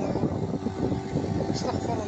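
Small motorboat's engine running steadily as the boat moves through the water, under an uneven rushing of wind and water.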